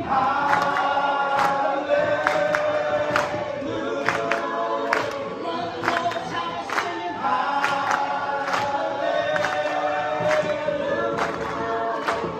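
A group of voices singing a worship song together, with hand claps keeping a steady beat.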